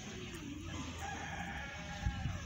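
A rooster crowing: one drawn-out call that starts on a lower note, holds a higher one, and falls in pitch at the end.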